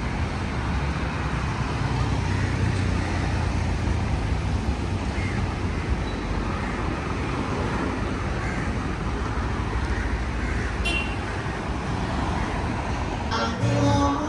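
Steady road traffic on a city street: a continuous rumble of cars going past. Near the end it gives way to music and voices.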